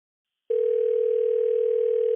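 Telephone ringback tone heard over the phone line: one steady, even tone starting about half a second in, the ring the caller hears while the call waits to be answered.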